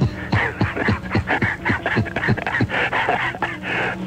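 A man laughing hard over an AM radio broadcast: a long run of short, falling 'ha' bursts, about four a second, with a steady low hum underneath.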